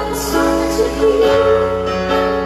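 Live band playing: sustained guitar and keyboard chords, with a woman singing over them.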